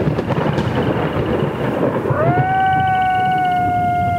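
A thunderstorm sound effect: rolling thunder with rain-like noise. About halfway through, a steady tone slides up and holds, leading into the music.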